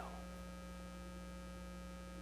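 Faint, steady electrical mains hum: a low buzz with a few fixed higher tones above it, unchanging throughout.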